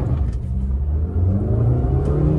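Maruti Suzuki Baleno's four-cylinder petrol engine accelerating hard from a standstill in first gear, revving up, heard from inside the cabin.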